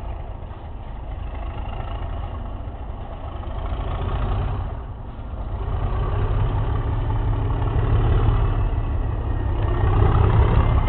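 Class 37 diesel-electric locomotive's English Electric V12 diesel engine working under power as it pulls away. It grows steadily louder as the locomotive draws nearer.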